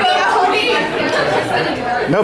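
Several people talking over one another in a large room: the murmur of guests' chatter at a dinner gathering.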